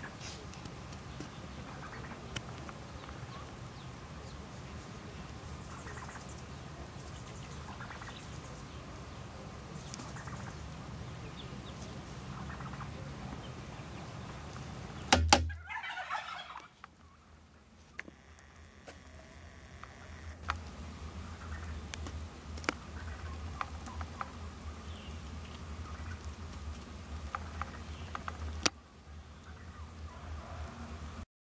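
Steady outdoor background with scattered small clicks. About halfway through, a loud click is followed by a bird call lasting about a second.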